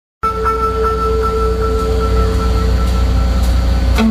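Symphony orchestra holding long sustained notes over a heavy low rumble; the sound cuts in abruptly just after the start.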